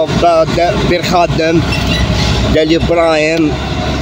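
A man's voice talking, over a steady low rumble of background noise.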